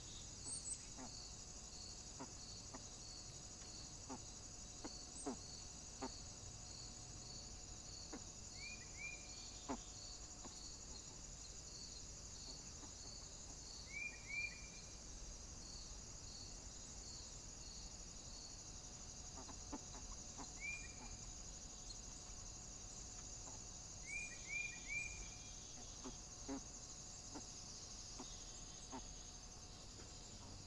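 Faint woodland ambience: a steady high insect buzz, with a short chirp repeating about twice a second for the first two-thirds. A few brief rising bird chirps come singly or in twos and threes, and soft clicks are scattered through.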